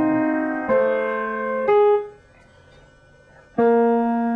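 Piano playing slow, held chords. A new chord sounds about a second in and another shortly before two seconds; that one is cut off suddenly, and after a pause of about a second and a half a new chord is struck near the end.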